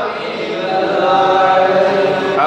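A man's melodic religious recitation, chanted in long held notes into a microphone; after a brief dip at the start, one note is sustained steadily.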